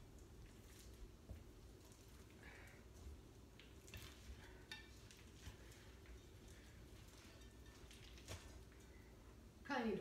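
Faint scrapes and light knocks of hands digging a sticky molasses candy mixture out of a mixing bowl, over a low steady hum. A woman's voice starts right at the end.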